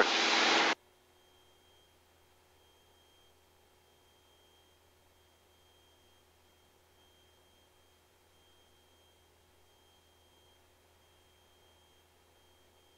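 Headset intercom audio: a loud even hiss of cabin noise cuts off abruptly less than a second in, then near silence with only a faint steady hum.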